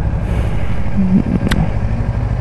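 Kawasaki Ninja 500's parallel-twin engine idling steadily while the bike stands still, with a single sharp click about a second and a half in.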